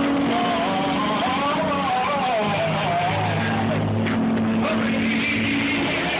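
Live gospel song: a man's voice singing a bending, drawn-out melody over sustained low accompaniment chords, the chord changing about two and a half seconds in.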